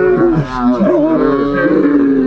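Several young men yelling and straining with effort, their shouts overlapping into drawn-out roars.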